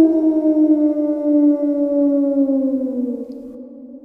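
One long wailing note that holds its pitch, then slides slowly downward and fades out near the end.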